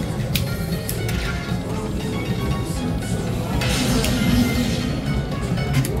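Dragon Link slot machine playing its game music and reel-spin sounds over steady casino-floor noise, with a few sharp clicks.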